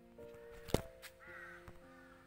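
Quiet outro music of held notes, with a sharp click about three quarters of a second in and a short wavering, bird-like call a little past the middle.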